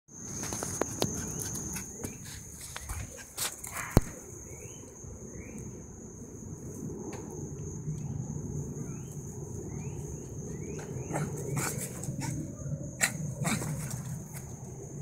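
A small dog yapping at intervals over a steady high whine in the background. A sharp click about four seconds in is the loudest sound.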